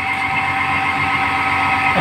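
Steady machine hum with several fixed pitches held over a low even noise, with no knocks or clicks.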